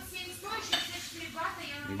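Dishes and cutlery clinking, with a few sharp clicks and faint voices in the background.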